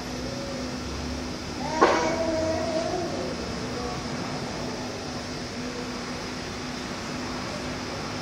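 A single sudden cry about two seconds in, its pitch wavering for about a second before fading, over a steady low hum.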